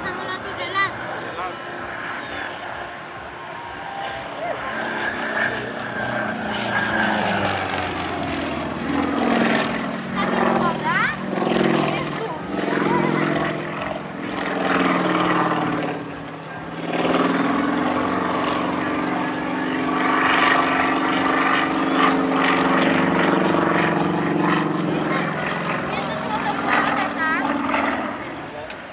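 Propeller engine of a single-engine aerobatic plane flying a display, its note rising and falling in pitch as it manoeuvres, with a brief dip about two-thirds of the way through.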